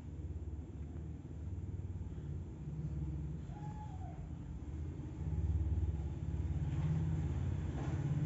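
A low, uneven rumble that grows louder about five seconds in.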